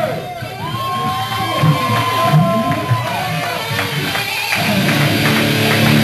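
Distorted electric guitar playing a short solo lick through an amplifier: one long held, bent note, then a quicker run of picked notes ending on lower sustained notes.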